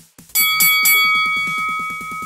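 A bell struck three times in quick succession, ringing on and slowly fading, signalling the end of a timed exercise round, over electronic background music with a steady fast beat.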